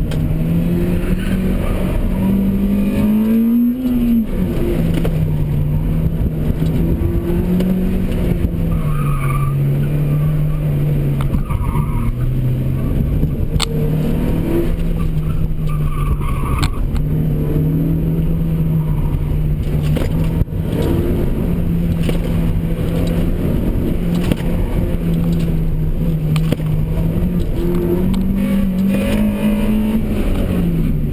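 Acura RSX Type-S's 2.0-litre four-cylinder engine heard from inside the cabin during an autocross run, its pitch rising and falling with throttle through the course: it climbs and then drops sharply about four seconds in, and climbs again near the end. Several short tyre squeals come through the corners in the middle.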